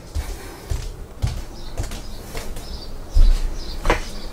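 Footsteps and low handling thumps as a wooden interior door is pushed open. There is a heavier thump about three seconds in and a sharp click near the end.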